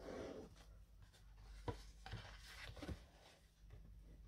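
Faint rubbing of a burnishing tool over cardstock as a glued paper hinge is pressed down inside a box corner, with a light tap a little before the middle and a couple of small ticks after it.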